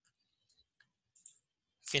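A few faint clicks from a computer's input devices, with a man's voice starting near the end.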